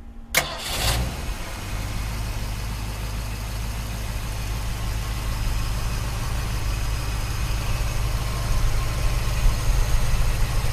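1949 Mercury's 255 ci flathead V8, with dual exhaust through Cherry Bomb mufflers, being started: a click and a short crank, and it catches within the first second. It then settles into a steady idle with a deep exhaust rumble.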